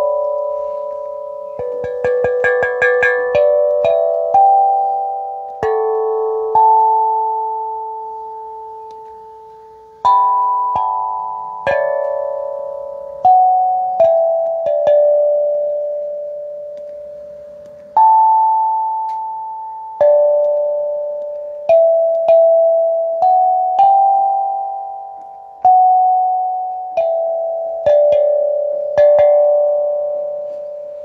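Steel tongue drum struck with a ball-tipped mallet. There is a quick flurry of strikes about two seconds in, then slow single notes every one to two seconds, each ringing on and fading away.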